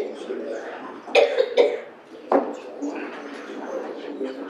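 Murmur of people talking in a large room, with a person coughing twice about a second in and once more shortly after.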